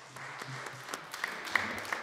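Applause from the members seated in the chamber: a short round of hand-clapping, made of a steady patter with a few sharper individual claps.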